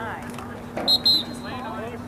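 A referee's whistle blows a short, shrill blast about a second in, trailing off quickly, with shouting voices from the field around it.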